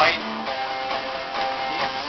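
A guitar chord strummed once at the start and left ringing.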